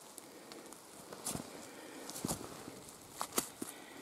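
Footsteps on dry forest litter of leaves and pine needles, about one step a second, each with small sharp crackles.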